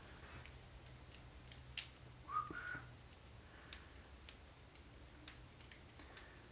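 Faint, sparse clicks of small kit parts being handled as ball connectors are fitted to RC car suspension uprights, with a brief rising whistle-like squeak about two and a half seconds in.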